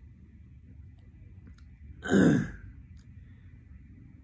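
A man sighing: one short, loud breath out about two seconds in, falling in pitch, with a few faint clicks around it.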